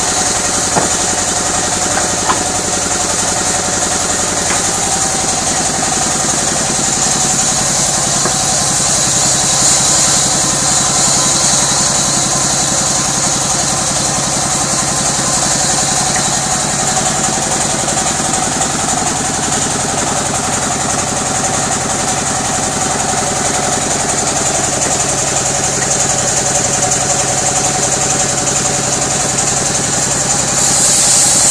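Sawmill band saw running steadily while its blade rips lengthwise through timber, a continuous machine drone with a steady high whine over it.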